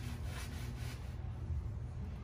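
Faint low steady rumble with light rubbing from a handheld phone as it is moved along the wheel arch.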